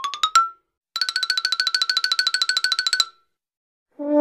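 Cartoon-style comic sound effects. A quick rising run of plucked notes ends just after the start. After a short gap, one fast note repeats at a steady pitch, about a dozen times a second, for two seconds, then stops.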